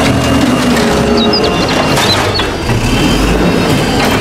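Automated side-loader garbage truck at work: its diesel engine running loudly under load while the hydraulic side arm lifts a wheeled cart. A low hum rises and falls, with a few short high squeaks between about one and two and a half seconds in.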